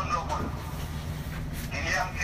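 A voice speaking in short phrases over a steady low electrical hum.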